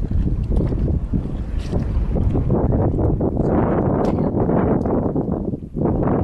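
Wind buffeting the microphone, a loud uneven rumble that drops away briefly near the end.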